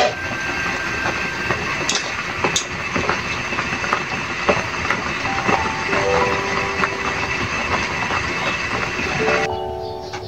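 Water at a hard rolling boil in an aluminium pot of whole bananas: a steady bubbling rush full of small pops, with a few sharp clicks. About nine and a half seconds in it cuts off suddenly and music begins.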